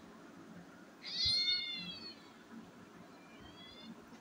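Young cat meowing twice: a loud, high meow that falls slightly in pitch about a second in, then a fainter, rising meow near the end.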